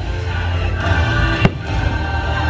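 Fireworks show soundtrack music playing over loudspeakers, with one sharp firework bang about one and a half seconds in.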